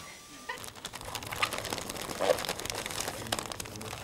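Plastic bags and wrapping paper rustling and crinkling as goods are handled and packed, many small irregular crackles starting about half a second in.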